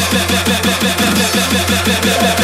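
Hardcore electronic dance music from a DJ mix: a fast roll of repeated falling-pitch hits over a steady low bass drone, with no clear kick beat.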